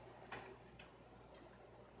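Near silence, with one faint click about a third of a second in.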